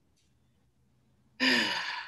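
Silence for over a second, then a woman's long, breathy sigh, partly voiced and falling away in pitch.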